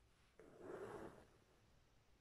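A brief, faint rasp of shiny embroidery thread (hilo cristal) being drawn through taut hooped fabric behind a tapestry needle, lasting under a second.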